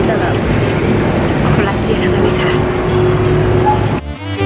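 Talking over background music, with a steady low hum of busy indoor ambience.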